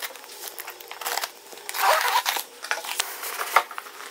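A cardboard shipping box being opened by hand: scattered taps, scrapes and rustles of cardboard and packing tape, with one longer tearing rasp about two seconds in.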